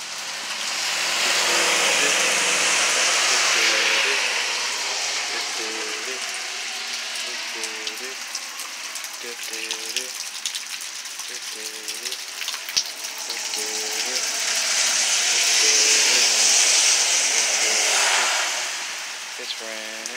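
Heavy rain pouring down steadily. Its hiss swells louder about a second in and again near the end.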